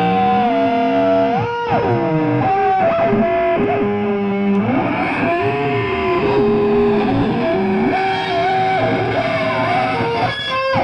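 Distorted electric guitar played through effects, holding long notes that bend and slide in pitch.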